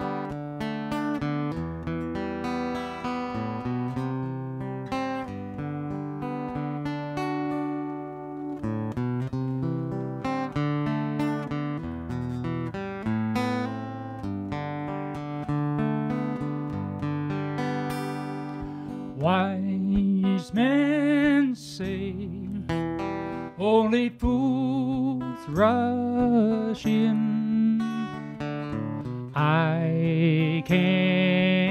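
Acoustic guitar playing the opening of a song, steady chords. About 19 seconds in, a louder melody line with wavering, sliding pitch joins over the guitar.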